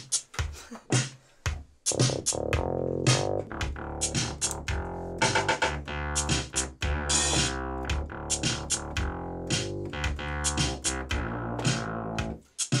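An electronic drum-machine groove of resampled LinnDrum sounds, played from an MPC. About two seconds in, a synth bass line played on a keyboard synthesizer joins the beat.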